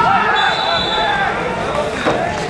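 Referee's whistle blown once, a steady high tone lasting about a second, over several voices calling out around the pitch.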